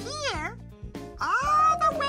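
Playful children's game music under a high, wavering wordless vocal sound, then a rising glide that levels off into a held high tone.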